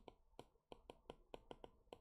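Faint, irregular taps and clicks of a stylus on a tablet screen during handwriting, several a second.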